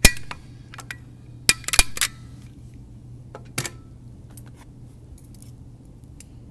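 Sharp metallic clicks and clacks of small office tools being handled on a desk: a loud click at the start, a quick cluster of clacks about one and a half to two seconds in, another near three and a half seconds, then only faint ticks.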